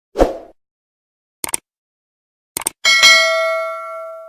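Subscribe-button animation sound effects: a short whoosh near the start, a quick double click about a second and a half in and another about two and a half seconds in, then a bell ding that rings out with several clear tones, fading slowly.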